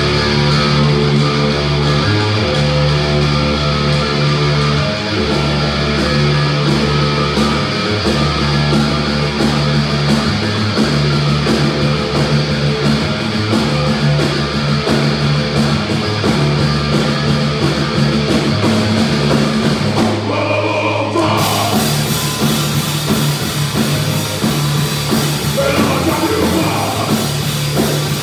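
Thrash metal band playing live: distorted guitars and bass chugging a heavy low riff over a drum kit. About twenty seconds in the riff breaks off briefly, then the full band comes back in with crashing cymbals.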